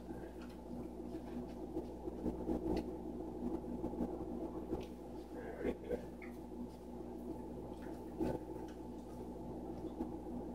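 Low steady hum of room tone in a small room, with faint scattered ticks and soft shuffling sounds over it.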